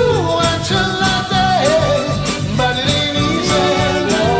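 Voices singing a pop song over a karaoke backing track with a steady beat.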